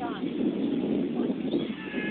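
Indistinct, distant voices of players and spectators calling out, over steady background noise.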